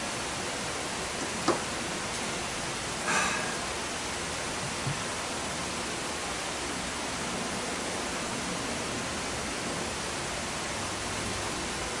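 Steady, even hiss of rain, with a single small click about one and a half seconds in and a short scuff about three seconds in.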